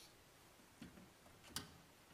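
Communion trays of small glasses clinking as they are lifted from the table: a faint click, then a sharper clink under a second later.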